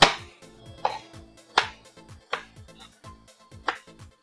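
Chef's knife dicing soft, cooked Yukon Gold potatoes on a plastic cutting board: about five sharp knocks of the blade striking the board, a little under a second apart.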